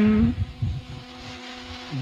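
A man's drawn-out word through a microphone trails off, then a pause filled with a steady electric hum over a low rumble, plausibly the hall's electric fans running.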